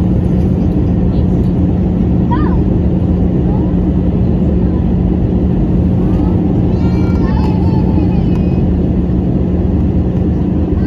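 Jet airliner cabin noise beside the wing-mounted turbofan engine during the climb: a loud, steady roar with a steady low hum underneath. Faint voices come through twice, a couple of seconds in and again near the end.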